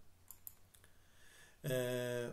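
A few faint computer-mouse clicks as the presentation slide is advanced. Near the end comes a man's drawn-out hesitation sound 'yyy', held at one steady pitch for about half a second.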